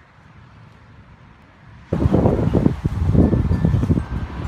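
Faint steady background hiss, then about two seconds in a sudden change to loud, gusting wind buffeting the microphone.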